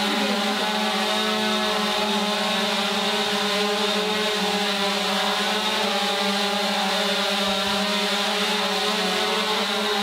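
Quadcopter drone hovering close by, its four propellers giving a loud, steady buzzing whine that holds one pitch.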